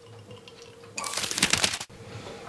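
A quick, dense run of small clicks and rattles lasting about a second, starting about a second in: paintbrushes being handled as the small brush is put away and the medium brush taken up.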